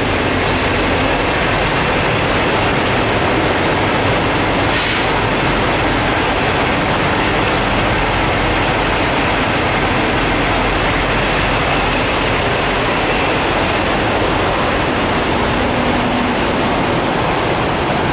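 Heavy diesel truck engine idling, a steady low running sound with a constant hiss over it.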